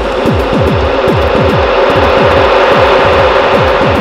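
Electronic music played on a Eurorack modular synthesizer: rapid, repeating low zaps that fall sharply in pitch, several a second, over a steady drone and a hissy wash of noise.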